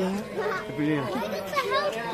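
Chatter of a group of people talking over one another, with high-pitched children's voices in the second half.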